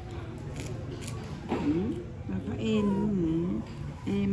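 A man's voice cooing in a wordless, sing-song way, rising and falling in pitch. It starts about a second and a half in, over a low steady hum.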